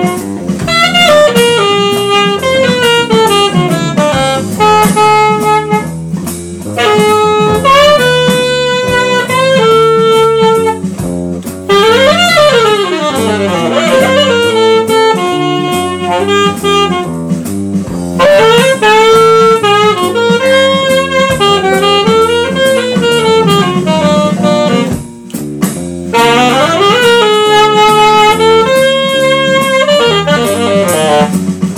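Jazz saxophone playing a fast bebop line, with quick runs up and down, over electric bass and drum kit. The phrases are broken by brief breaths.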